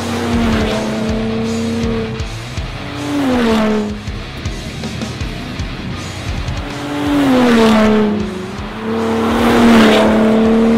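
Ford Raptor pickup's engine and exhaust, its note swelling twice and sliding down in pitch each time, over background music.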